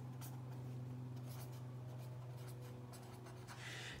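Pen writing on spiral-notebook paper: faint, irregular scratching strokes as a short heading is written, stopping about three and a half seconds in.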